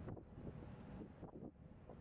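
Faint wind rushing over the microphone on a ferry's open deck.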